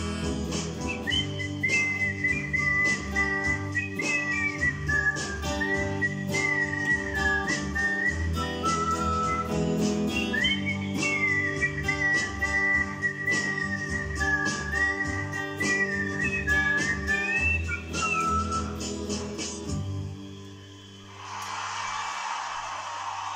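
A person whistling the song's closing melody in two long phrases over electric guitar chords. The music ends about 20 seconds in.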